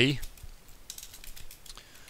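Typing on a computer keyboard: a short run of irregular key clicks.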